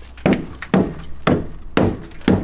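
Four knocks on a Lada's front wheel arch, about half a second apart, as dirt is knocked out of the arch to clean it.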